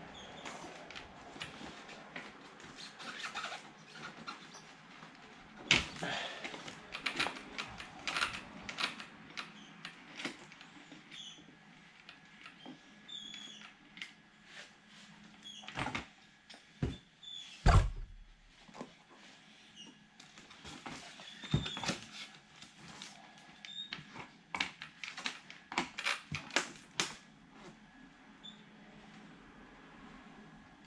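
Scattered clicks and knocks of hands fitting large wheels onto an Arrma Kraton 6S RC truck and tightening the wheel nuts with a wrench, with one louder thump about halfway through.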